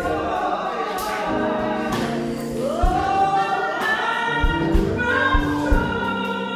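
Gospel worship singing: a woman's voice holding long notes among other voices, with instruments underneath and low thumping beats in the second half.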